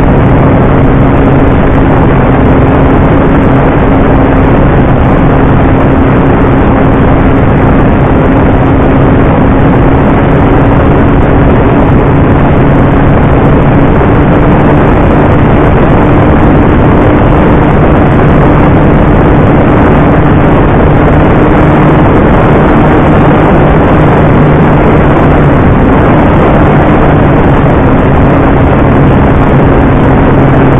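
Electric motor and propeller of a Dynam T-28 Trojan RC model plane running steadily in flight, heard from an onboard camera through heavy wind noise. The drone's pitch creeps up slightly through the middle and drops back a little a few seconds before the end.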